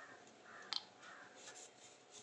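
A kitchen knife faintly scraping and paring a piece of fruit held in the hand, with one sharp click a little under a second in.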